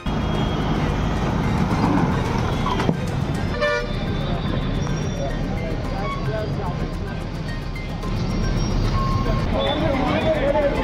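Busy street noise with a crowd of voices and traffic, and a vehicle horn sounding once, briefly, about three and a half seconds in.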